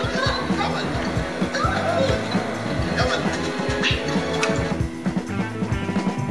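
A film soundtrack played from a VHS tape, heard from the TV's speakers: music with a steady beat and some voices.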